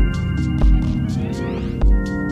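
Ambient techno: sustained synth chords over a deep kick drum that thumps three times, with thin ticking hi-hats. A rising synth sweep comes in the second half.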